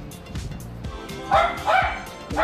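A dog gives two short, high-pitched yips about a second and a half in, over background music.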